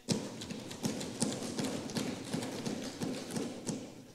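Applause from members of the house: many quick, sharp knocks overlapping. It starts abruptly and dies away near the end.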